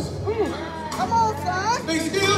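A male lead singer with a live gospel band, improvising vocal runs whose pitch slides up and down and climbs steeply near the end. Underneath is a held low bass note from the band.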